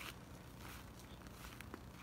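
Faint outdoor background, almost silent, with a few soft clicks.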